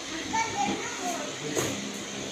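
Scattered children's voices and background chatter, faint and broken, over a steady murmur of room noise.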